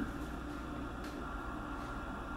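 Steady background room noise: a low hum and even hiss with a faint high steady tone, and no distinct events.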